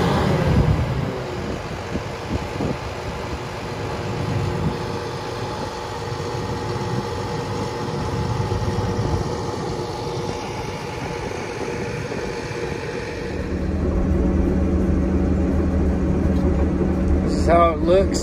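Caterpillar crawler dozer running steadily as it tracks across bare dirt, its diesel engine and moving steel tracks heard from outside. From about 13 seconds in the sound turns to a deeper, steadier engine drone, as heard from inside the cab.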